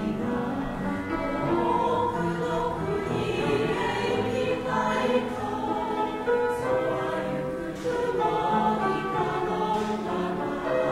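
A choir of mostly women's voices singing in held notes that change pitch phrase by phrase, with a brief break for breath about eight seconds in.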